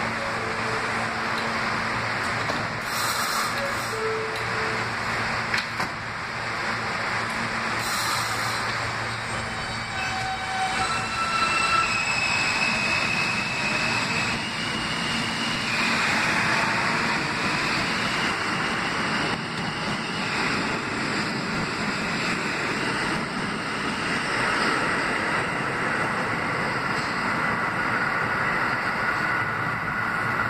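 R160 subway train departing a station: standing with a steady electrical hum at first, then, about ten seconds in, its electric traction motors whine in rising steps as it accelerates. This is followed by the steady rumble of wheels and cars running past.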